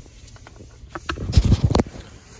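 Handling noise: a short run of rustles and clicks, loudest in the second half, as a phone camera is moved about inside a car's cabin.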